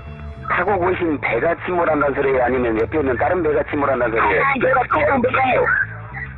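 A voice on a recorded emergency phone call, speaking steadily over low background music.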